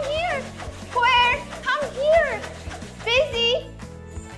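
High-pitched, cartoon-style character voice making wordless squeaks and exclamations in about five short bursts that swoop up and down in pitch. Steady background music runs underneath.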